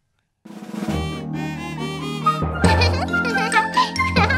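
A brief dead gap, then the instrumental intro of a children's song: a bright, tinkling melody over a bass line, with drums coming in about two and a half seconds in.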